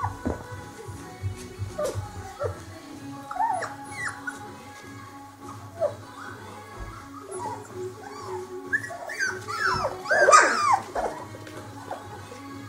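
Four-week-old puppies whining and yelping in short rising and falling cries, a few about four seconds in and a loud cluster of them near the ten-second mark. Background music plays throughout.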